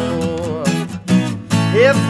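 Acoustic guitar strummed steadily under a man's singing voice: a held sung note dies away in the first half second, the guitar carries on alone, and the next sung line begins near the end.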